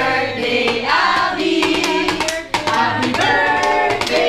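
A group of adults singing a song together, with hand-clapping running through it.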